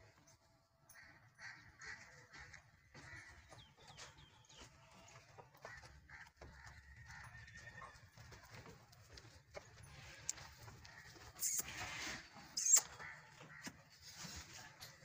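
Faint sounds of cattle moving about in a shed, with two short, louder noises near the end.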